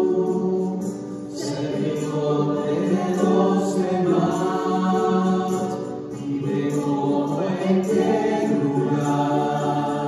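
Several voices singing a hymn together, in sustained phrases with short breaks about a second in and about six seconds in.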